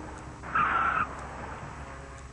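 A BMW sedan's right front tyre squealing once, briefly, about half a second in, as the car is braked hard and turned. The tyre is starting to lock because turning right takes the weight off it.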